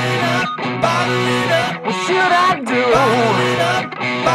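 A rock band playing an electric-guitar-led instrumental passage, with notes bending up and down in the second half.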